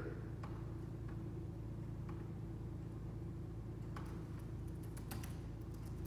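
Scattered computer keyboard clicks over a steady room hum, several coming close together a little after the middle and near the end.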